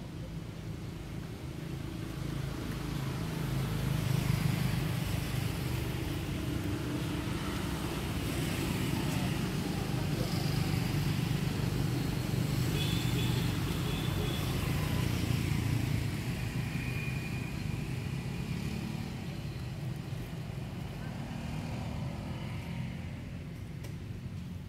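Low engine hum of a motor vehicle that grows louder about four seconds in, holds, and fades after about sixteen seconds.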